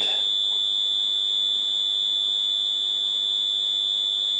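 Points-test buzzer on a distributor timing fixture sounding one steady, high-pitched tone. It is the signal used to read where the Lucas four-lobe distributor's points work on the fixture's degree scale.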